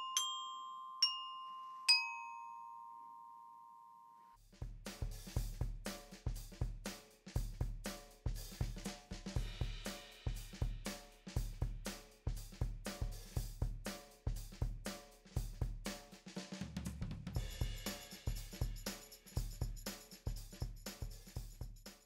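Orchestra bells (a metal-bar glockenspiel) struck with mallets: three notes about a second apart that ring on and cut off abruptly about four seconds in. Then music with a drum kit keeping a steady beat.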